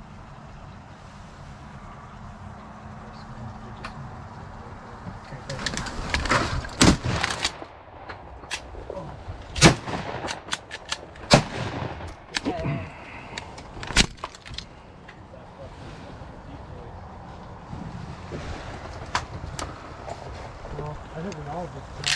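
Shotgun shots at ducks, several sharp blasts spread over about eight seconds, the loudest around the middle, with clatter from the gun being handled between them.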